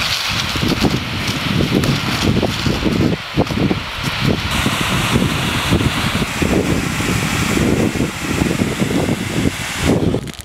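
Wind buffeting the microphone in irregular, loud gusts over a steady hiss of water spraying from a fire hose nozzle.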